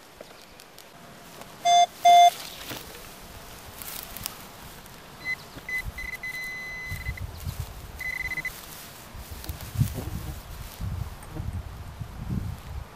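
Metal-detecting electronics: two short beeps about two seconds in, then a higher-pitched pinpointer tone that pulses, then holds for over a second, and sounds again briefly around eight seconds, signalling a metal target in the hole. Gloved hands rustle grass and scrape soil toward the end.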